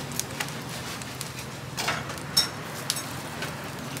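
Charcoal fire in a döner grill crackling, with scattered sharp pops and clicks over a steady low hum.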